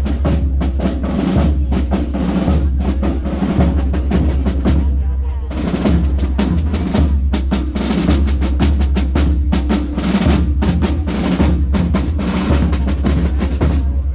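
Marching band drum section playing a cadence on snare and bass drums, with rolls; the brass is silent. The drumming thins out briefly about five seconds in, then picks up again.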